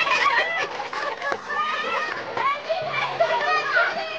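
A group of excited voices calling out over one another, many of them high-pitched.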